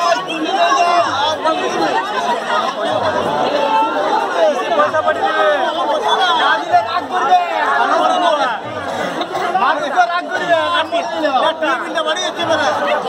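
Crowd chatter: many voices talking at once around the idol, loud and continuous, with a low thud repeating roughly once a second beneath it.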